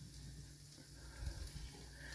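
Quiet kitchen room tone with a low steady hum and a few faint soft sounds of cherry tomatoes being handled on a wooden cutting board.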